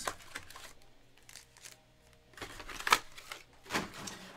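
Cardboard trading-card box and its foil packs being handled on a table: quiet rustling, then a few sharp knocks and clicks as the packs are stacked and the box is set down, the sharpest about three seconds in.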